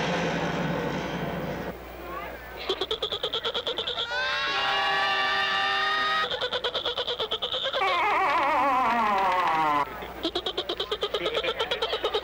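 Horror-trailer soundtrack of human screams and laughter: bursts of rapid, choppy cackling laughter alternate with a rising scream held for about two seconds in the middle and a run of falling wails after it.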